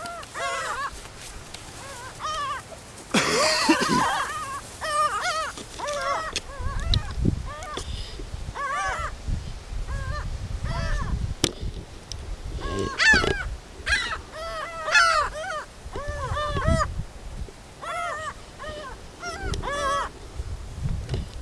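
A flock of gulls calling, many short arched cries overlapping one after another as the birds circle and squabble over food.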